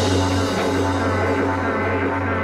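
Rock music: a held, droning chord over a steady low bass note, the song sustaining toward its close.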